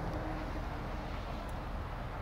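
Steady low outdoor rumble with a faint hiss, no distinct events.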